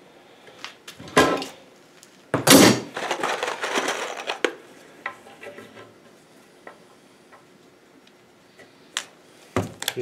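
Workshop handling noise: a steel bar clamp is loosened and pulled off an oak board, with a rough scraping rattle about two and a half seconds in. It is followed by scattered light clicks and knocks of tools and wood.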